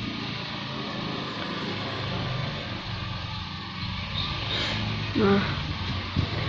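Steady background hum and hiss, with a low droning tone running under it, as from an engine or motor somewhere nearby.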